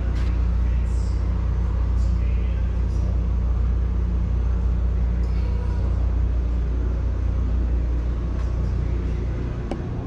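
A steady low rumble, with a few faint clicks.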